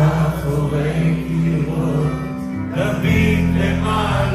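Live band music with a man singing over electric guitar and keyboards; the bass and chords shift about three seconds in.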